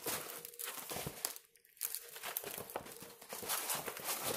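Crinkling and crackling of a diamond-painting canvas and its plastic cover film as it is handled and rolled back against its curl, with a brief pause about one and a half seconds in.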